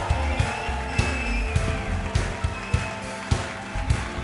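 Live funk band playing without vocals: drums keep a steady beat a little under two hits per second under a heavy bass line, with long held higher notes over the top.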